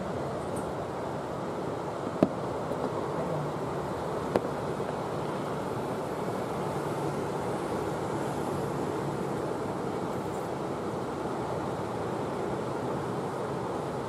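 A steady wash of distant city noise, with two sharp, distant bangs of fireworks about two and four and a half seconds in.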